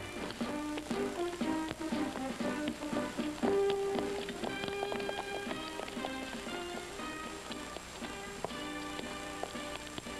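Background music from the episode's score: short struck or plucked notes at shifting pitches over light clicking percussion, with one longer low note held about three and a half seconds in.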